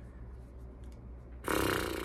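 Quiet room tone, then about one and a half seconds in a man's long, breathy sigh starts suddenly and slowly fades.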